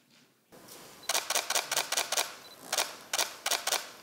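Several camera shutters firing in quick, overlapping bursts, starting about a second in, with a short pause around the middle.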